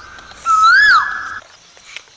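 A short, loud, high-pitched squeal that rises and then falls, about half a second in, over a steady high tone that stops before the end.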